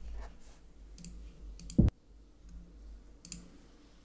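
A few sharp computer mouse clicks, with one louder, deeper thump a little before two seconds in.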